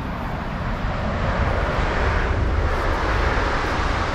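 A train passing on the railway beside the canal: a steady rushing rumble that swells over the first second or two and stays loud.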